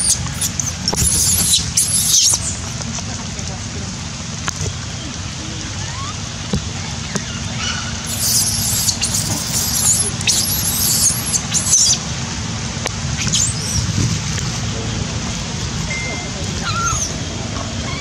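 Baby macaques screaming in shrill, high-pitched squeals: a cluster at the start, a long run of screams about eight to twelve seconds in, and short cries near the end. Under them runs a steady hiss of rain.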